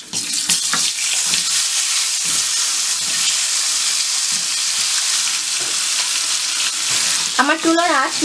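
Chopped green apple pieces tipped into hot spiced oil in a kadai, setting off a loud, steady sizzle of frying that starts right after a few clicks at the beginning.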